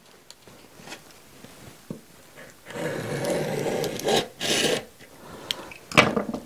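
Utility knife blade scraping along emery cloth, scoring it against the edge of a wooden paint stirring stick where the cloth will be folded over. A longer scraping stroke comes a little under three seconds in, then a shorter, brighter one.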